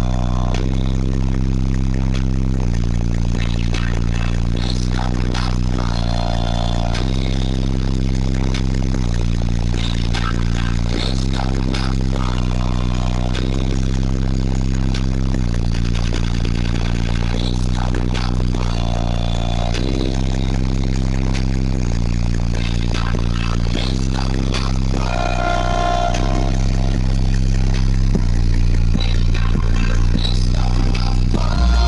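Very loud low bass from a car audio competition subwoofer system, playing a bass track of long sustained notes that step to a new pitch every two to three seconds. The air blast from the subwoofer port is strong enough to blow hair about, and there is a clatter of loose parts buzzing over the bass.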